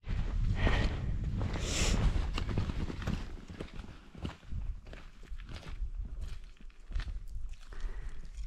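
Hikers' footsteps on a rocky mountain path, with irregular sharp taps of trekking poles, over a low rumble that is loudest in the first half.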